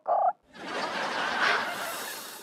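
A brief warbling vocal sound, then a whoosh sound effect for a scene wipe that swells to a peak about a second and a half in and fades away.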